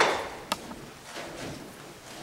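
A single heavy knock with a short decaying tail, then a sharp click about half a second later.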